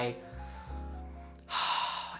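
A person sniffing a fragrance test strip: one quick, noisy breath in about one and a half seconds in, over soft background music.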